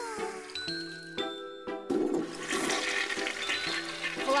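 A toilet flushing, a rushing of water that starts about halfway through, over background music with a falling tone near the start.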